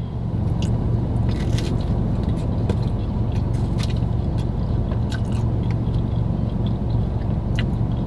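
A man biting into and chewing a slice of pizza, with scattered soft crunching clicks, over a steady low hum from the inside of a car.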